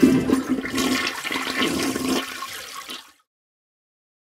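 Toilet flushing: a rush of water that starts suddenly, fades, and cuts off after about three seconds.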